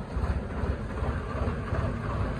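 Swaraj 969 FE tractor's diesel engine running steadily under load, with a low rumble as it pulls a chained tree stump.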